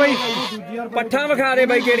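Goat bleating in long, wavering calls, with men's voices around it.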